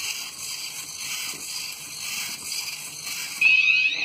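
Small servo motors of an Otto DIY walking robot whirring as it steps across a wooden floor. About three and a half seconds in, the robot's buzzer starts a loud, high, steady beep with sliding tones over it as its ultrasonic sensor detects a hand in front of it.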